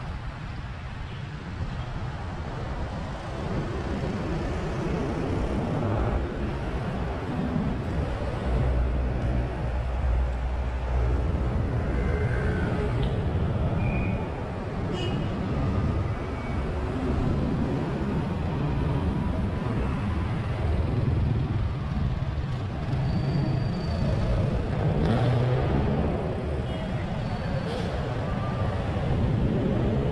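Street traffic heard from a moving bicycle: passing cars and motorcycles over a steady, uneven low rumble, with a few short high chirps now and then.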